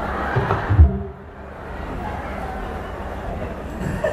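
A loud low thump just under a second in, then a steady murmur of background noise.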